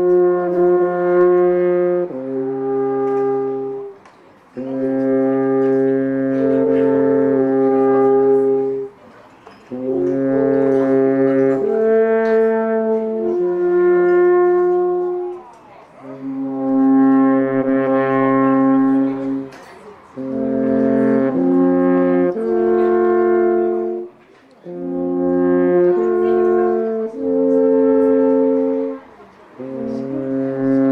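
Two alphorns playing a duet in harmony: long held notes in phrases of a few seconds, each phrase broken off by a short breath pause.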